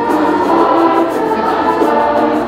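A school choir singing held notes, with a small band accompanying them.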